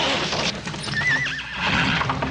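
A horse whinnying: one short, warbling call about a second in, heard in a film soundtrack.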